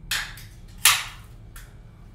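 A few sharp knocks and clatters: one at the very start, a louder one just under a second in, and a fainter one near the end.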